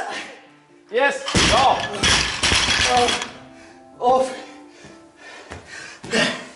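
A loaded barbell with rubber bumper plates is dropped onto a lifting platform about a second in. It lands with a heavy thud and clatters and bounces for about two seconds. Shouting voices overlap the drop.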